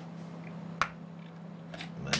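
Subwoofer driver giving a single sharp click a little under a second in, one pulse of an LM555 timer's slow square wave passed through a series capacitor that blocks the DC. A steady low hum runs underneath.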